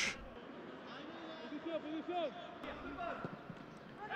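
Faint men's voices shouting on a football pitch, heard without any crowd noise.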